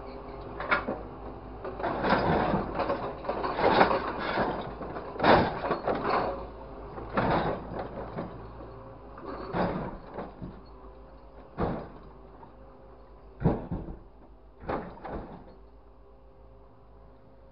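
Orange-peel grapple on a grapple truck's crane working a pile of scrap car parts: repeated crunches and clanks of metal on metal, coming in separate bursts every second or two and thinning out toward the end. Under them runs a steady low hum.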